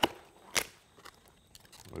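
Cardboard box being opened by hand: a sharp crackle as it starts and another about half a second in, then a few faint ticks.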